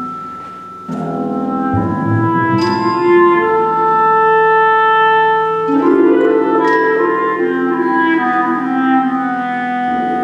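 Clarinet, harp and mallet percussion playing slow chamber music: a ringing chord dies away, then about a second in the ensemble comes in fuller, the clarinet holding long notes over struck, ringing mallet tones.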